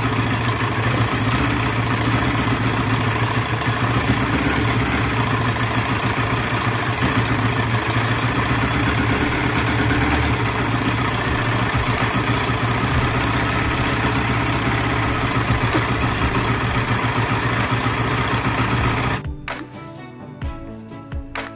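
Honda Sonic 125 motorcycle engine idling steadily on a newly fitted 28 mm carburettor during its test run. It cuts off suddenly just before the end, and music follows.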